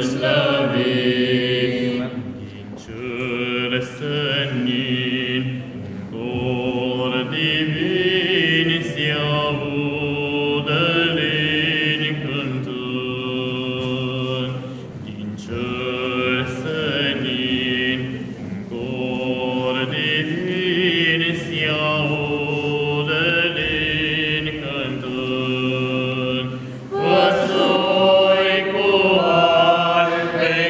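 A small group of men singing a Romanian Christmas carol (colind) together without instruments, in long held phrases with short breaks between them; the singing grows louder near the end.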